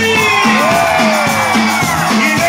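Live cumbia band playing loudly, a bass note pulsing on the beat, with crowd members whooping and yelling in long rising-then-falling cries over the music.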